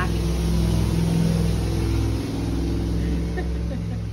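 Motor vehicle engine running loudly, a low steady drone that eases off slightly a little over two seconds in.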